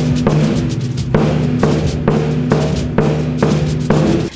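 A large Aragonese bombo bass drum with a rope-tensioned skin head, beaten with a padded mallet strapped to the player's arm, in a run of strokes at roughly two to three a second, each stroke leaving a low booming ring. The playing is a little out of time, in the player's own word "desfasada", since she has never played before.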